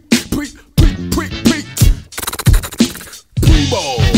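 Hip hop instrumental: a drum beat with turntable scratching, short sliding scratched sounds cut between the hits.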